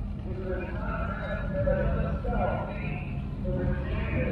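A man speaking over a public-address system, heard at a distance, over a steady low rumble.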